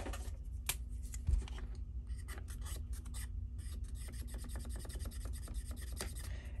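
Tip of a marker pen rubbing on a hard plastic toy surface in many quick, faint short strokes, filling in a small unpainted rectangle.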